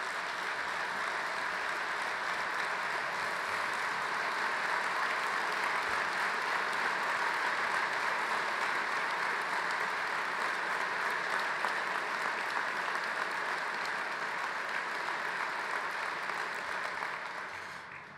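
Large crowd applauding steadily, the clapping dying away near the end.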